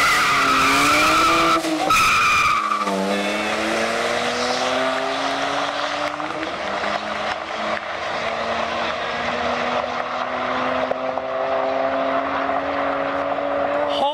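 A twin-turbo EcoBoost V6 Ford Flex and a turbocharged BMW launching side by side at full throttle. Tyres squeal for the first two or three seconds, then the engines pull away with their pitch climbing slowly as they move off down the road.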